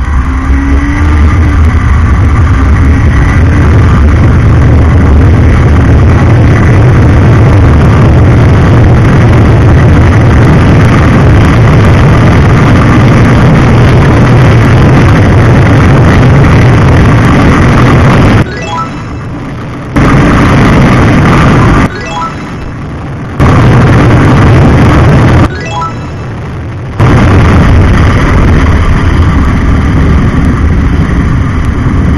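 Sport motorcycle running at full throttle on a top-speed run, with loud engine rumble and heavy wind noise on the bike-mounted camera. In the last third the sound drops away suddenly three times, each time for over a second, and faint regular ticking comes through in the dips.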